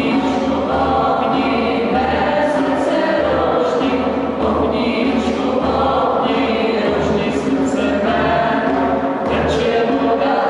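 A mixed group of men's and women's voices singing a song together in a large stone church, accompanied by acoustic guitars, over a steady low beat of about one pulse a second.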